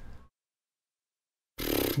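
Dead silence, broken only by a brief faint noise right at the start. A man's voice starts talking near the end.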